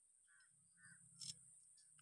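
Faint bird calls, two short calls about half a second apart, followed a little past a second in by a single sharp click.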